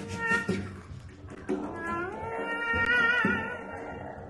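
Free-improvised music: a wordless male voice slides up about a second and a half in and holds long wavering, cat-like tones over low bowed or plucked string notes.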